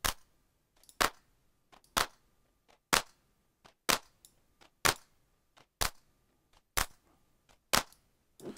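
Electronic clap sample, AI-generated and run through tube saturation, erosion and overdrive for a crunchy, distorted snap, hitting alone about once a second in a steady loop: nine short, sharp hits.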